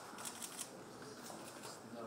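Camera shutters clicking in quick bursts, with faint voices murmuring in the background.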